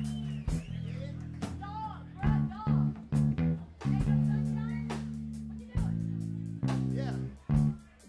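Live jazz-funk band recording: a bass guitar holds long low notes under guitar and drum hits, with voices calling out over the music and a 'yeah' near the end.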